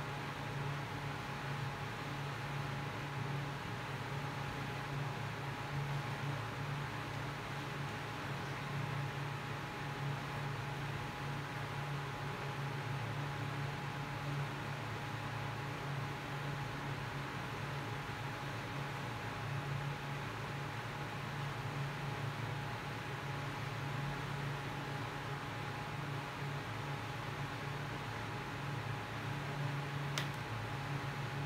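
Steady background hiss with a low hum and a thin steady whine, unchanging, like a fan or electrical noise in a small room.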